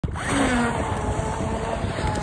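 3D-printed RC jet boat driven by a 3674 brushless motor, its jet pump throwing water as it speeds off: a steady motor whine over the rush of water spray, starting about a third of a second in.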